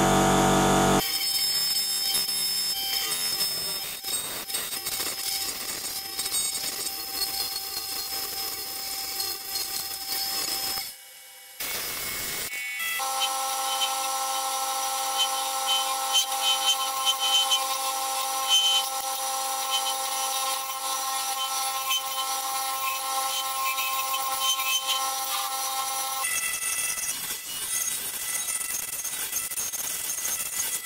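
Wood lathe running while a turning tool cuts a spinning resin-cast piece: a steady scraping cut over the lathe's humming tones, broken by a brief drop about eleven seconds in and shifts in pitch where the footage cuts. The first second holds a louder pitched sound.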